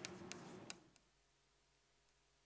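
A few faint ticks of a pen or chalk on a board in the first second, then near silence.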